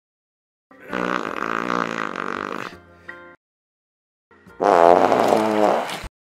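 Two drawn-out fart sounds with a buzzing, wavering pitch: the first lasts about two and a half seconds, and the second, louder, starts past the middle and is cut off at the end.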